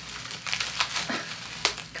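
Plastic bubble wrap crinkling and crackling as it is handled around a boxed blush palette, a dense run of small crackles with one sharper snap near the end.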